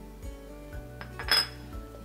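Background music, with one sharp clink of kitchenware just over a second in, as a dish or utensil is set down or knocked on the counter.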